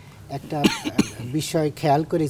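A man's speaking voice on a lapel microphone, broken by two short, sharp throat-clearing coughs about half a second to a second in, before his words resume.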